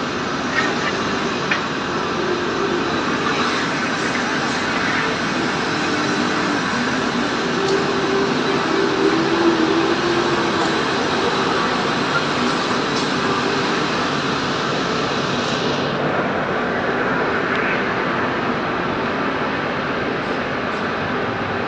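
Komatsu FD70 diesel forklift running as it drives, under a steady loud din of factory machinery. The higher hiss thins out about four seconds before the end.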